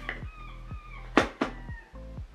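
Seagulls calling: thin, drawn-out cries that fall slightly in pitch. Two sharp knocks come a little over a second in and are the loudest sounds.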